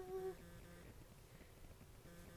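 A woman's brief hum or drawn-out 'ah' right at the start, then quiet room tone with a faint steady hum.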